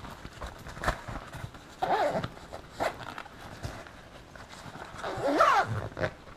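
A zipper on the upper pouch of a Think Tank Photo Airport Security V2 roller camera bag is drawn closed in two strokes, about 2 s and 5.5 s in. The rasp rises and falls in pitch as the pull speeds up and slows. Light knocks and fabric handling come between the strokes.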